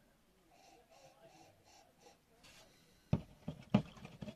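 A quiet sip of cider from a glass, air drawn softly through the mouth while tasting. About three seconds in come two sharp clicks.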